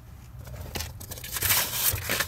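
Rustling and crinkling handling noise with a couple of light clicks, louder in the second half, as the just-removed plastic fuse panel cover is handled and set aside.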